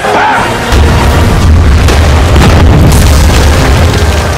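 Cinematic explosion sound effects: a heavy boom about a second in, then a sustained deep rumble with repeated impacts as a structure is blown apart in dust, over dramatic trailer music.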